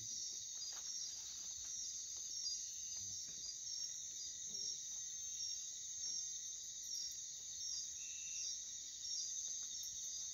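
Night chorus of crickets and other insects: a steady high-pitched trill with a regular pulsing call over it.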